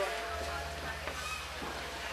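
Faint, indistinct voices over background noise, with a low steady hum that comes in just after the start.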